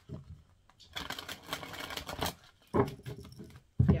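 A tarot deck being shuffled by hand: a quick run of riffling card clicks about a second in, lasting just over a second. A short knock follows, then a sharper thump near the end.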